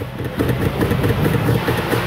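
Nissan Frontier's 3.3-litre V6 revved by rapid snaps of the throttle, engine speed swinging between about 2,300 and 3,400 rpm. The snaps drive the mixture rich and lean to test how fast the bank one upstream oxygen sensor responds.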